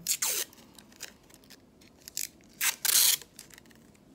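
Masking tape being peeled off the roll in short rasping pulls: a brief one just after the start, then a longer, louder pull about three seconds in.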